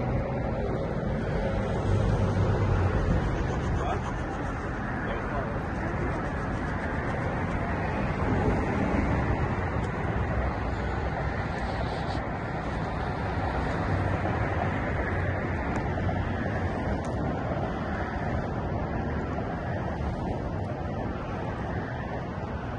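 Wind buffeting the microphone, a low rumbling rush that swells in gusts, loudest about two seconds in and again near the middle.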